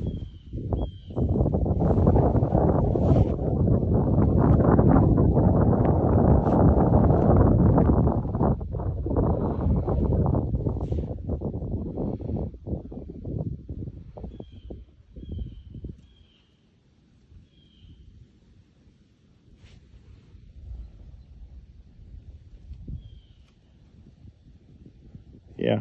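Wind gusting across the microphone, a loud rough rumble that dies away after about twelve seconds and picks up again faintly near the end. Faint bird chirps come through a few times.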